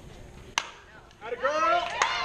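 Softball bat hitting a pitched ball: one sharp crack about half a second in. Then spectators shouting and cheering, louder toward the end, as the ball is put in play.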